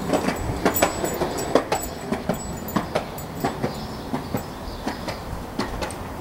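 Skateboard rolling on pavement: a steady low rumble from the wheels with irregularly spaced sharp clacks.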